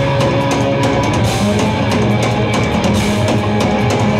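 Rock band playing live and loud: electric guitars over a full drum kit, with frequent drum and cymbal hits.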